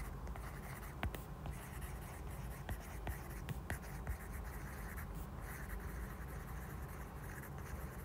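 Faint scratching and scattered light taps of a stylus writing by hand on a tablet screen, over a low steady background hum.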